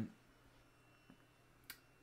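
Near silence: room tone with a faint low hum, broken by a soft click about a second in and a sharper click near the end.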